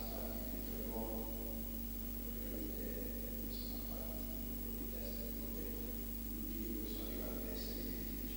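A faint, distant man's voice, an off-microphone question from the floor, over a steady electrical hum.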